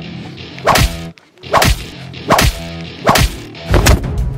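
Dubbed fight sound effects: five sharp whip-crack punch hits, roughly one every 0.8 seconds, matching blows thrown in a staged brawl.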